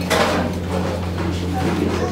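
Café room sound: indistinct background voices over a steady low hum, with a short clink or knock just at the start, such as a fork on a plate.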